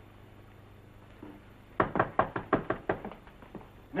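Rapid knocking on a door: a quick run of about ten sharp raps in just over a second, starting a little before halfway, with a few weaker raps after.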